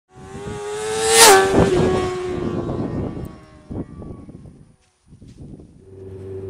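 A fast vehicle engine sweeping past: its whine climbs slightly, then drops in pitch with a loud whoosh as it passes about a second in, and fades away over the next few seconds. A low steady engine hum comes in faintly near the end.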